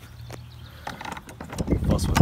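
A few small clicks and knocks from the plastic locking knob and metal handle tube of a broadcast spreader as the knob is worked. Then a louder low rumble of wind on the microphone comes in about a second and a half in.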